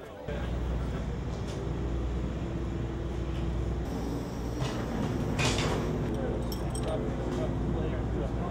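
Garage background of a steady low rumble, with a few light metallic clinks of tools about halfway through as a crew member works lying under the race car.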